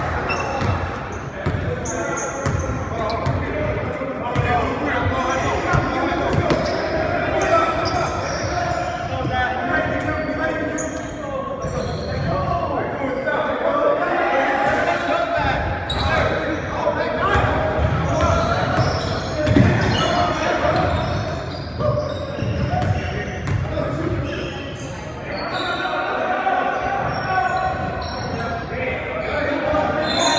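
Basketball bouncing on a hardwood gym floor during play, with players' voices calling out, all echoing in a large gymnasium.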